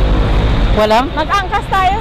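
Low rumble of road traffic on a city street, strongest in the first part, with people's voices starting about a second in.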